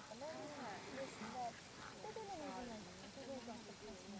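Faint, indistinct voices of people talking.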